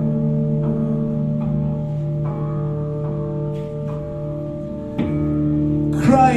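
Solo electric guitar playing held, ringing chords with a slow plucked note starting about every second, and a sharper pluck near the end.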